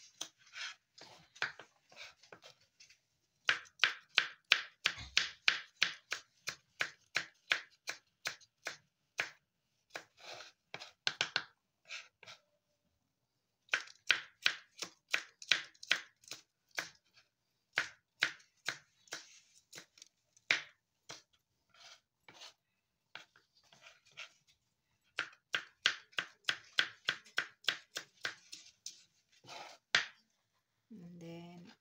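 Kitchen knife chopping green chilies on a cutting board: runs of sharp taps, about three or four a second, broken by a few short pauses.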